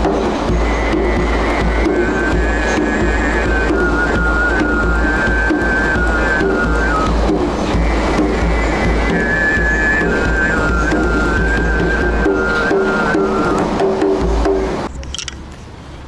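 A man throat singing, a held low drone with a whistling overtone melody stepping above it, over a steady hand-drum beat, with a steady low rumble underneath. It stops about 15 seconds in.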